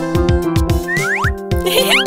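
Upbeat children's cartoon background music with a steady beat, overlaid with short rising-pitch cartoon sound effects about a second in and again near the end.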